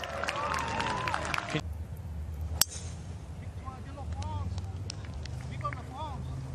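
A golf iron striking the ball on a fairway approach shot: one crisp, sharp click about two and a half seconds in, after a short spell of crowd voices.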